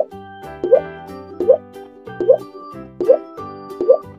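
Children's background music with a short, rising 'bloop' sound effect repeating in time with it, about once every three-quarters of a second.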